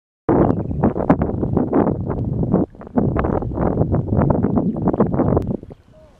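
Wind buffeting the microphone in rough, crackling gusts. It drops out briefly a little before three seconds in and dies away shortly before the end.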